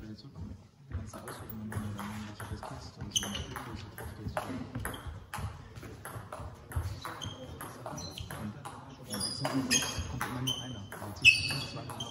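Table tennis ball clicking off the bats and the table through a series of rallies, the sharp clicks coming irregularly with short gaps. The loudest hit comes near the end.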